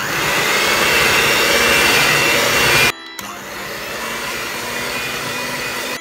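Electric hand mixer running, its beaters whisking buttercream as green food colouring is mixed in. The motor noise stops briefly about halfway through and comes back quieter.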